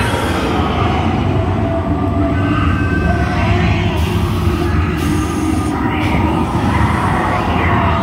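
Loud, steady low rumble of a theme-park dark ride in motion, with faint voices mixed in.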